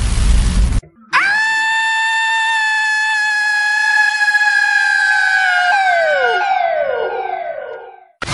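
A short burst of loud static noise, then a sustained high-pitched electronic whine that swoops up at its start and holds steady. From about six seconds in it breaks into several overlapping downward pitch glides that fade out.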